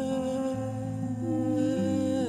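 A voice holding one long, steady sung note without words, over nylon-string classical guitar accompaniment.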